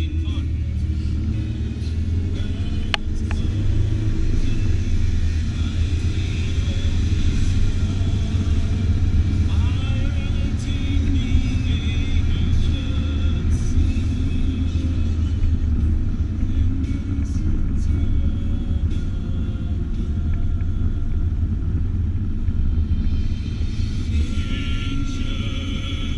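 Steady low rumble of a car's road and engine noise heard inside the cabin while driving, with music playing over it.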